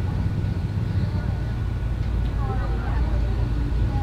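Steady low rumble of outdoor background noise, with a faint voice in the distance about two and a half seconds in.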